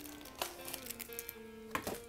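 Soft background music: a few held notes stepping from one pitch to another. Two light clicks cut in, about half a second in and near the end.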